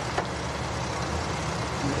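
Vehicle engine idling as a low steady rumble, with a single sharp click just after the start.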